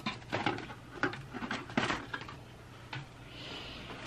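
Light household handling noise: a string of small clicks and knocks over a low steady hum, with a soft hiss in the last second or so.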